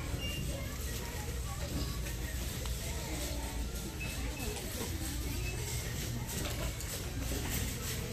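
Big-box store background: faint, indistinct voices of shoppers over a steady low hum.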